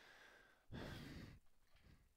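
A man's soft breath, a single sigh-like exhale lasting under a second near the middle, with faint breathing before it; otherwise near silence.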